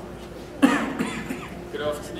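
A person coughing: one sudden loud cough about half a second in, then a second, weaker one.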